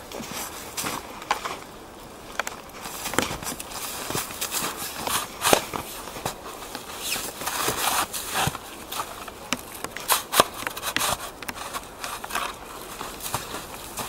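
Irregular crunching and scraping in snow: a snow shovel digging and boots tramping around a bicycle stuck in the snow. The sharpest crunches come about five and a half and ten seconds in.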